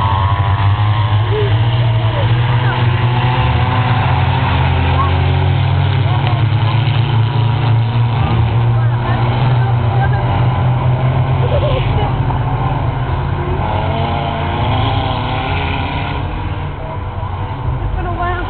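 Racing car engines on a dirt-and-grass circuit, revving up and down as the cars lap at a distance, over a constant loud low rumble. The sound gets a little quieter near the end.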